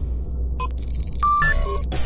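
Electronic intro music: a deep bass pulse under short digital beeps and blips at several pitches, with a thin steady high tone through the second half.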